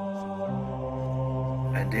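Droning music: a steady held chord that drops to a lower note about half a second in. A man's voice starts speaking just before the end.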